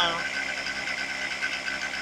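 Honda Dio AF27 scooter's 50cc two-stroke single-cylinder engine idling steadily.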